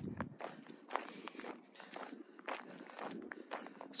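Footsteps of a person walking at an easy pace, about two steps a second.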